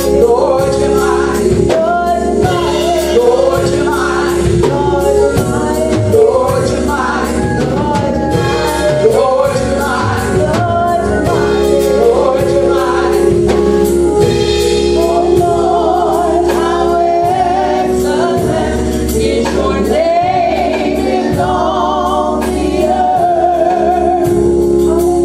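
Three women singing a gospel song together into microphones, over an instrumental accompaniment of held chords and a steady beat.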